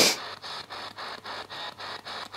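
Spirit box sweeping through radio stations: choppy static cut into short pulses, about seven a second, after a brief sharp burst of noise at the start.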